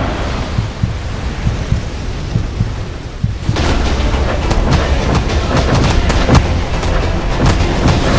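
Cartoon fight sound effects: a loud, deep rumble. About three and a half seconds in, a rapid flurry of sharp impact hits joins it and runs on.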